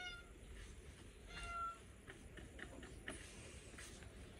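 A cat meowing faintly twice: a short high call at the start and another about a second and a half in. A few soft clicks follow.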